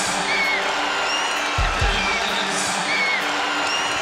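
Arena crowd cheering and clapping under a steady documentary music bed of low held tones, with a few short high squeaks cutting through.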